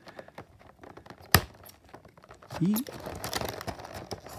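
Stiff plastic blister packaging crinkling as an X-Acto knife cuts along the inside of the bubble on a carded action figure, with one sharp click about a third of the way in.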